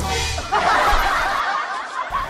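Canned laughter: a crowd of people laughing together, coming in about half a second in and carrying on steadily.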